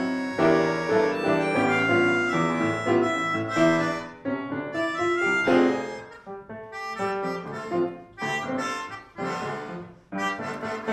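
Melodica and grand piano playing a duet: the reedy melodica carries the melody over the piano accompaniment, in phrases broken by short pauses.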